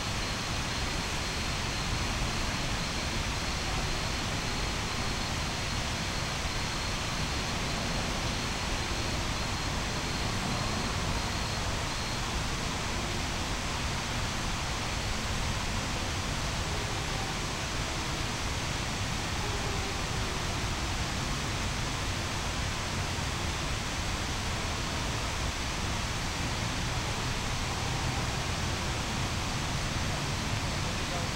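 Steady, even rushing noise of an outdoor night city ambience, with no distinct events. A faint high-pitched pulsing tone runs through roughly the first twelve seconds.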